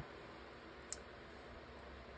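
Quiet room hiss with a single short, sharp click a little under a second in.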